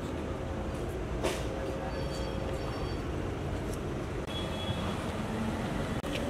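Low, steady running noise of a car moving slowly close by, with a single sharp click about a second in.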